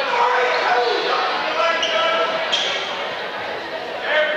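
A basketball bouncing on a hardwood gym floor, with spectators' voices chattering throughout.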